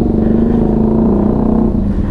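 Honda X-ADV 750 scooter's parallel-twin engine running at low road speed, heard from the rider's seat. Its note holds steady, then drops slightly about a second and a half in.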